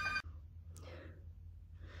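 An electronic ringing tone cuts off just after the start, followed by two faint breaths.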